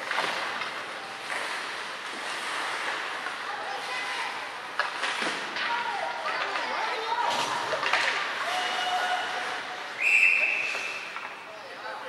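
Ice hockey rink game din: voices calling out and scattered knocks of sticks and puck against the boards. About ten seconds in, a loud high blast of a referee's whistle stops play.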